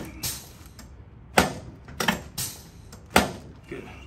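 Hill Labs chiropractic drop table's sections snapping down under quick adjusting thrusts: a series of sharp clacks, the loudest about a second and a half in and about three seconds in.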